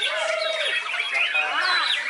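Many caged white-rumped shamas singing at once in a contest chorus, with overlapping whistled phrases, rising and falling glides and chattering calls.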